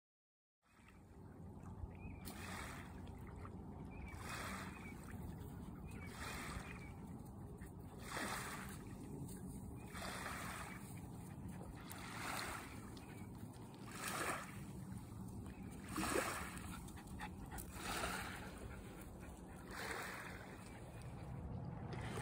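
Small waves lapping on a sandy shore, a soft wash about every two seconds.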